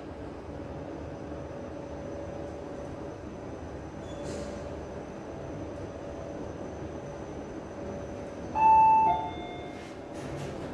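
A 2010 Fujitec passenger lift car travelling up its shaft, with a steady rumble and a faint hum. Near the end an arrival chime rings out as two clear tones, the second lower than the first, as the car reaches its floor.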